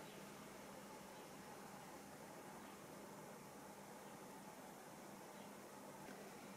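Near silence: a faint, steady hiss of background noise.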